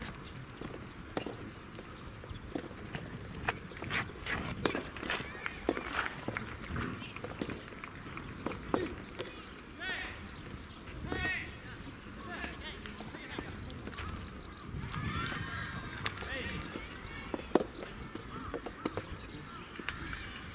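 Distant voices and shouts of players across outdoor soft tennis courts, with scattered sharp pops of soft tennis balls being hit or bounced.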